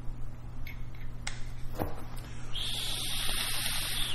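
A long draw on a vape, heard as a steady hiss of air through the tank, starting a little past halfway and lasting about a second and a half. A couple of small clicks come before it, and a steady electrical hum sits under everything.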